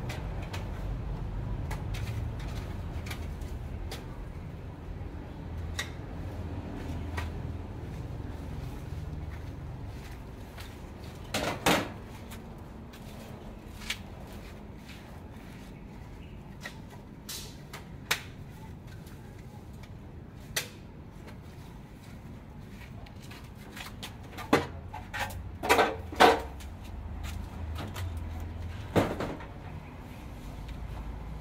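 Scattered knocks and clatters of hard objects, loudest in a short burst about twelve seconds in and in a run of several more late on, over a low steady rumble.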